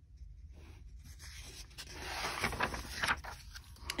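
Paper rustling and sliding as a picture-book page is turned by hand and pressed flat, with a few small clicks; it grows louder through the middle.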